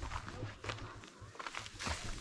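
Footsteps on a dry forest floor: a few soft, irregular crunches, the loudest near the end.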